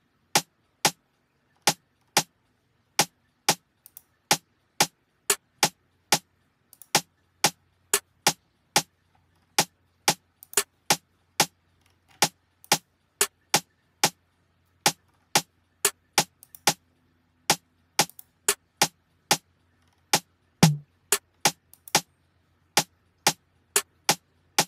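Programmed drum samples from a zouk beat in Logic Pro, played back a drum at a time: a snare pattern first, then other snare and percussion parts such as a conga. Short, sharp hits, several to the second, with no other instruments.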